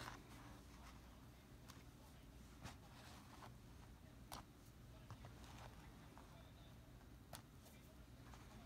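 Small sewing scissors snipping embroidery jump stitches: a few faint, sharp snips spaced out over near-silent room tone.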